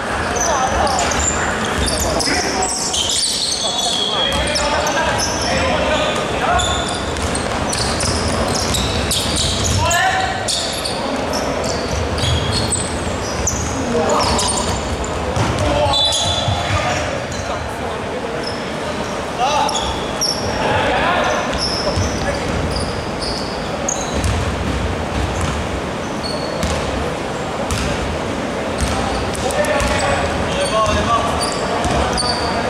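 Basketball bouncing on a hardwood court during play, with short high squeaks from shoes and players' voices calling out, all echoing in a large sports hall.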